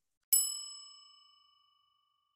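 A single bright bell-like ding, struck once about a third of a second in and ringing out over about a second and a half: a transition chime marking a new section title.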